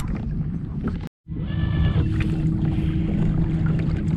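Wind and water noise on a kayak, broken by a short silent gap about a second in. After the gap, a bow-mounted electric trolling motor drives the kayak along with a steady low hum over the water noise.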